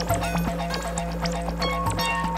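Electronic synthesizer music: short clicky percussion hits and brief pitched blips in an uneven rhythm over a steady low drone.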